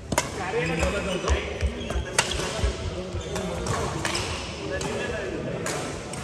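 Badminton rally: several sharp cracks of rackets striking the shuttlecock, a second or two apart, with players' footfalls thudding on the court in a large echoing hall.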